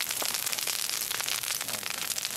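Burning brush crackling: a dense, fast run of small snaps over a steady high hiss.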